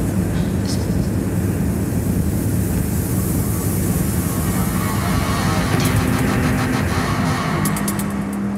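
Techno music from a club DJ set: a dense, noisy passage over a steady low bass note, with quick runs of hi-hat ticks coming in about six seconds in and again near the end.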